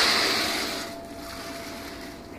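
Heavy blackout curtain fabric rustling as it is pushed aside and brushes close past the microphone. The swish is loudest at the start and fades away within about a second.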